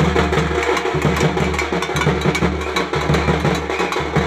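Tamil folk festival drumming: fast, dense stick strokes on a pair of waist-slung drums, over a deep steady drone that breaks off for a moment roughly once a second.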